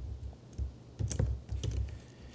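Typing on a computer keyboard: a few sharp key clicks, bunched about a second in and again a little later, each with a low thud.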